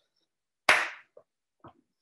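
One sharp hand clap about two-thirds of a second in, followed by a couple of faint short knocks.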